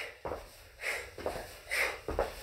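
Three short, forceful breaths out, about one a second, in time with front kicks, with a few light thuds of feet on carpet between them.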